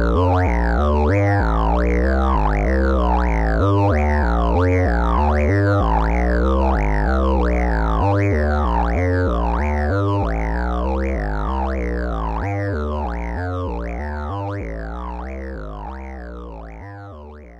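Modular synthesizer sequence run through a Haible Dual Wasp Filter, a Eurorack module: each note, about two a second, has a resonant filter sweep falling from high to low, over a pulsing low bass line. The sequence fades out over the last few seconds.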